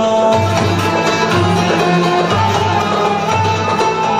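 Live Turkish folk ensemble music: plucked long-necked saz (bağlama) and ud over a recurring low drum beat.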